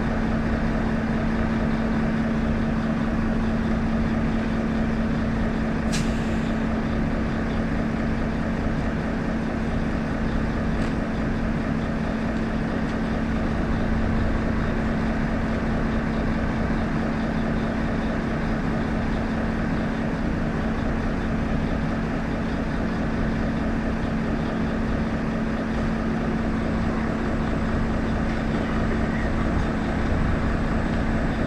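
A large diesel engine running at a steady speed with an even drone. A single sharp click about six seconds in.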